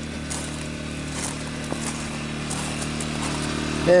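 Generator engine running at a steady pitch, a constant hum, charging batteries.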